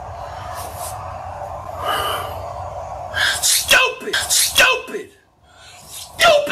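A man's sharp gasping breaths over a steady background noise, then loud, strained wordless yelling from about three seconds in: a frustrated fan's reaction to a bad play.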